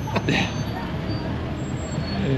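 Road traffic: cars driving past close by, a steady hum of engines and tyres on the street.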